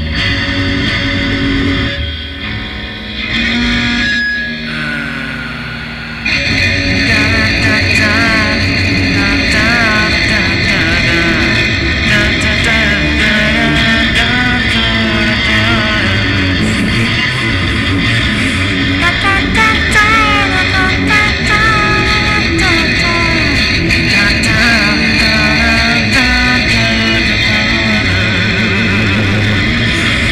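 Guitar music with electric guitar and bass, with wavering lead notes over it. It is thinner and quieter at first, then gets fuller and louder about six seconds in and stays steady.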